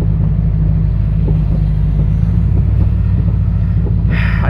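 Steady low rumble of a Ford Bronco's engine and tyres on a wet road, heard inside the cabin as it moves slowly in traffic.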